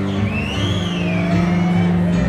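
Live band music: sustained notes over a steady low bass line, with a high lead line that slides up in pitch and falls back.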